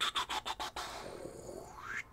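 Fingers scratching a stubbly chin and beard: a quick run of scratches, about eight a second, that gives way about a second in to a slower, continuous rub.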